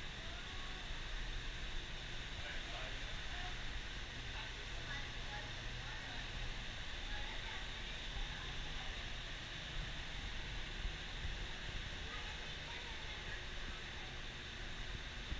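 Outdoor ambience: faint, indistinct voices of people talking some way off, over a steady low rumble and hiss.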